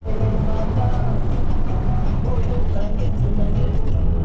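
Rumble of a car driving along a road, heard from inside, with music and singing laid over it.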